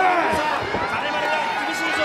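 Wrestling arena crowd shouting, many overlapping voices calling out at once.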